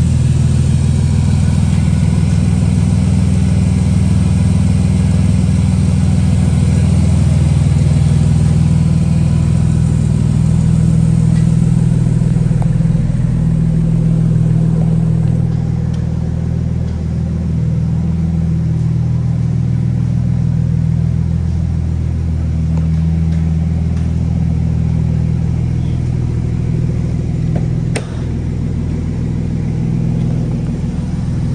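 The 3.5-litre V6 of a 2003 Chrysler Concorde idling steadily, heard close to the open engine bay at first and a little quieter after about 13 seconds. A single sharp click comes near the end.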